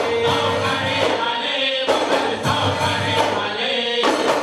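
A group of men singing a Goan ghumat aarti in chorus, with loud held and bending sung notes, over a steady beat of ghumat clay-pot drums and jingling small cymbals.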